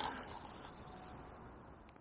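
Faint, steady riverside ambience, a soft hiss of flowing water, that fades down steadily and ends in silence.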